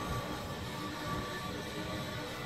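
Faint background music over steady room noise, with a thin steady tone throughout.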